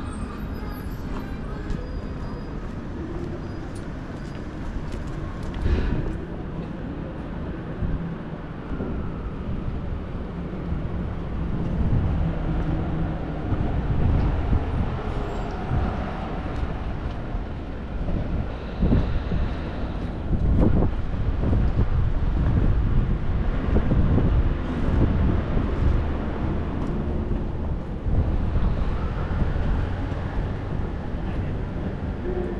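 City street ambience: motor traffic passing on the road, a steady rumble that grows louder through the second half.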